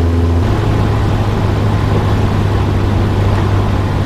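Cessna 172SP's four-cylinder Lycoming engine and propeller droning steadily in flight, heard from inside the cockpit; the drone steps up slightly in pitch about half a second in.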